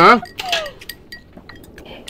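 Chopsticks and a spoon clinking lightly against ceramic rice bowls while eating, a scattering of small clinks.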